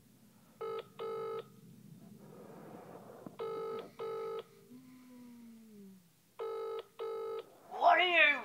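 Telephone ringback tone in the British double-ring pattern: three "ring-ring" pairs about three seconds apart, the line ringing at the far end while the caller waits for an answer.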